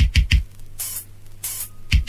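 Drum kit playing on its own in a reggae recording: a quick run of deep, sharp drum hits, two short hissing cymbal strokes, then another quick run of hits near the end, over a faint steady hum.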